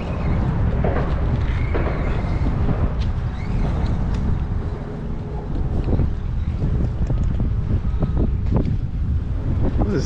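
Wind buffeting the microphone: a steady, rough low rumble with faint voices in the background.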